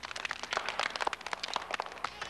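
A group of children clapping and applauding, a dense patter of many hands.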